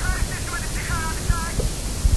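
A voice heard faintly through heavy static hiss and an uneven low rumble, like a worn old recording.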